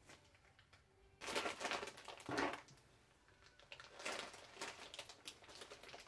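Clear plastic packaging crinkling and rustling as it is torn open by hand, in a burst about a second in and another near the end. The bag is vacuum-compressed, and the air goes out of it as it opens.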